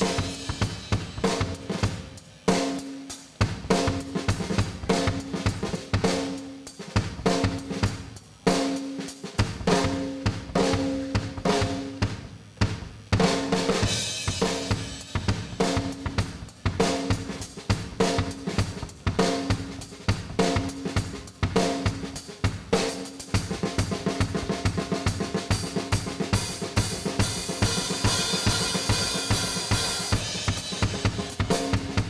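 Live drum solo on a full rock kit: fast rolls around the toms and snare over the bass drum. Cymbals build into a continuous wash over the last several seconds.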